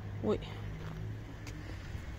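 A woman's short startled 'oi!', then a low steady outdoor rumble with a faint click partway through.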